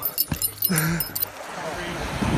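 A short laugh among quick clicks and rustles of a phone being handled and swung, then a steady hiss of wind and surf.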